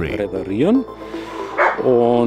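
A man's voice, not picked up by the transcript, over background music; one short rising vocal sound comes about half a second in.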